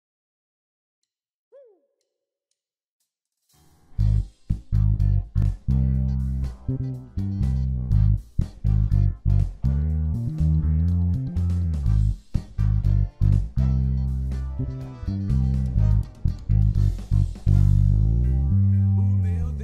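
Tagima Woodstock TW65 four-string electric bass, with P and J pickups, playing a bass line over a band recording with drums. The music starts about four seconds in, after near silence.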